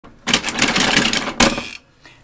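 Rock 'Em Sock 'Em Robots boxing toy: rapid plastic clattering as the punch plungers are pumped. Near the end comes a sharp louder click as the red robot's head is knocked up.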